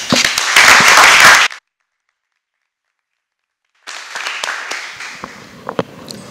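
Audience applauding for about a second and a half, cutting off abruptly into dead silence. Faint room noise returns a couple of seconds later, with a few small knocks and clicks.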